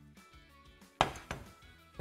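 A single sharp knock of kitchen utensils or cookware on the work surface about a second in, followed by a lighter knock, over soft background music.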